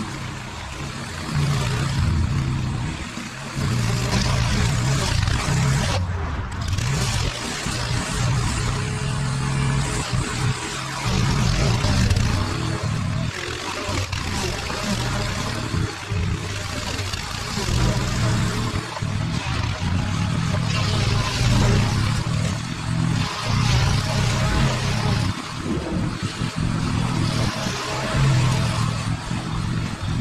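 Walk-behind rotary lawn mower's small petrol engine running as it is pushed through long, overgrown grass, its note rising and falling with the load.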